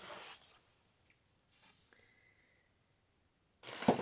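A sheet of paper being handled: a brief rustle at the start, then near silence, then a louder rustle and flap as the sheet is laid back down flat near the end.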